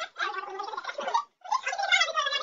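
A person's voice making sounds without clear words, in two stretches with a short break a little past a second in.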